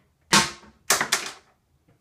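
Three sharp knocks in a small room: one about a third of a second in, then two close together about a second in, each dying away quickly.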